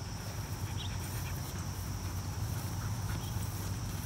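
Outdoor background sound: a steady low rumble under a thin, steady high-pitched drone, with a few faint soft clicks.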